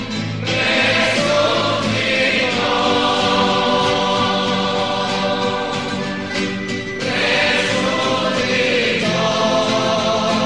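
A choir singing a religious song with instrumental accompaniment, in long held notes, with a new phrase starting about seven seconds in.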